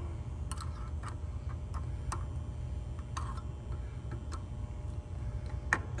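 Irregular light clicks of metal test-probe tips tapping and slipping on a dual run capacitor's terminals, about eight over several seconds, over a steady low hum.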